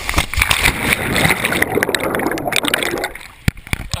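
Rushing, splashing pool water around a rider and an action camera as they shoot off the end of a water slide into the pool. The churning is loud and busy for about three seconds, then dies down, with a couple of sharp knocks near the end.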